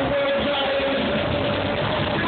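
Live hip-hop music played loud through a club PA system, recorded dense and muddy, with a held tone running through it.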